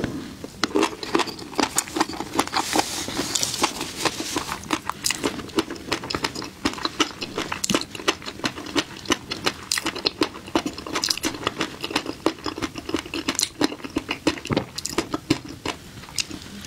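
Close-miked chewing of a mouthful of flying fish roe (tobiko), the tiny eggs popping in a rapid, dense crackle.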